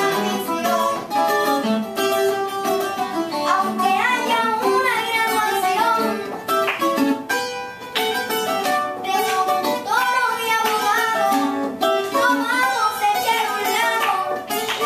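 A guitar playing a song, with a voice singing over it.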